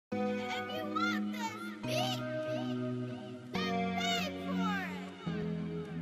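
Intro of a trap instrumental: sustained chords that change about every second and a half to two seconds, with a high, vocal-like melody sliding up and down over them, and no drums yet.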